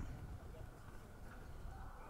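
Faint, steady low rumble of background ambience, with no distinct event.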